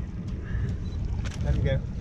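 Wind buffeting the microphone on a boat deck at sea, a steady low rumble, with a few faint clicks and a brief spoken "okay" near the end.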